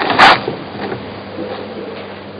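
Rustling and shuffling of the congregation close to the microphone as the men get to their feet, loudest in a sharp rustle at the very start and then dying away to a steady low room hum.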